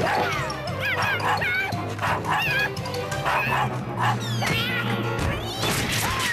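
A cartoon dog yips and barks in short rising-and-falling yelps over background music. Near the end there is a crash as it ploughs into a bush.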